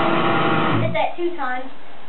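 An electric guitar chord, played through a small amplifier on strings tuned down a step, rings out and is cut off about a second in. The chord is the riff's odd shape: 1st fret on the sixth string with the 3rd fret on the fifth and fourth strings.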